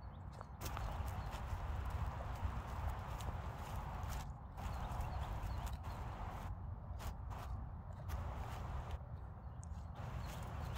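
Footsteps walking over grass, with a steady low rumble underneath.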